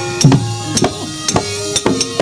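Wayang kulit fight-scene accompaniment: sharp knocks and clangs about every half second, typical of the dalang's wooden cempala and metal keprak plates struck against the puppet chest. Under them run kendang drum strokes that drop in pitch and sustained gamelan metallophone tones.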